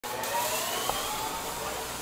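Steady hiss-like noise with faint, slowly rising tones, an intro sound effect at the start of a pop song track, before the beat and vocals come in.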